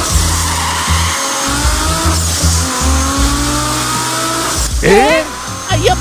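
Cartoon sound effect of a car engine running hard, its pitch climbing slowly, over background music with a pulsing bass beat. A voice cries out about five seconds in.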